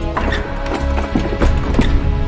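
Background music over a quick, irregular series of sharp wooden knocks: hands and forearms striking the arms and trunk of a wooden Wing Chun dummy.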